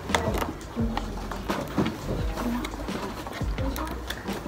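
Cardboard laptop box being handled and pried open, with several sharp clicks and scrapes of the flaps, over background music and voices.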